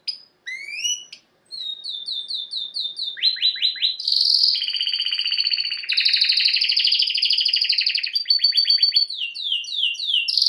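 Domestic canary singing a long, continuous song in distinct phrases: quick rising notes first, then runs of short repeated notes at about five a second, then falling notes. From about four seconds in it moves into long, fast, rolling trills.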